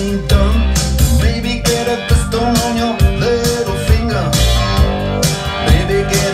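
Rock music with electric guitar: a melodic guitar part with pitch bends over a steady drum beat and bass line.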